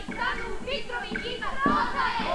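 Many overlapping voices of a stage cast, calling out and singing together in high voices, with music under them.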